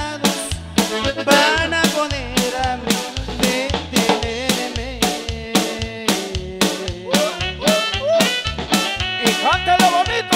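Live norteño band music with an accordion melody over bass and a steady drum beat of about two and a half beats a second, played without vocals.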